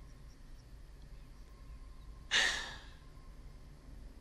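A woman's single breathy sigh about two seconds in, fading away over quiet room tone.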